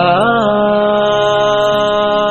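A male voice sings an Urdu naat, holding one long note that bends slightly at the start and then stays steady, over a steady low drone.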